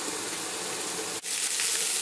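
Mushrooms, onions and green bell peppers sautéing in a frying pan, a steady sizzling hiss. It breaks off for a moment about a second in and comes back brighter, the pan now uncovered.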